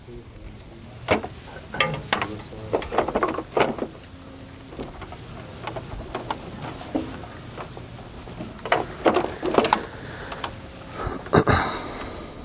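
Scattered clicks and knocks from handling an Ethernet cable and working its plug into a power-over-ethernet radio, with low voices murmuring in the room.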